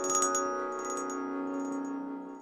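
Closing jingle of a news broadcast: bright struck notes ringing over a held chord, slowly dying away.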